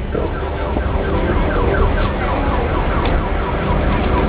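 An electronic siren sounding a rapid run of short falling sweeps, about four a second, over a steady low rumble.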